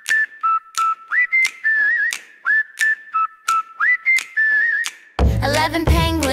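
Whistled melody opening a children's song, sliding up into its notes and moving between two or three pitches, over a steady beat of sharp clicks about twice a second. About five seconds in, the full backing music with a heavy bass comes in.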